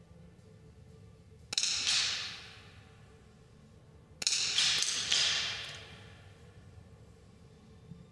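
Smallbore .22 rimfire target rifles firing in an echoing indoor range. One sharp shot comes about one and a half seconds in, then several shots in quick succession about four seconds in, each ringing out for a second or more.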